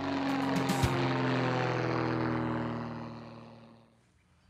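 Single-engine propeller airplane passing overhead. Its engine drone holds steady for a couple of seconds, then fades away as the plane moves off.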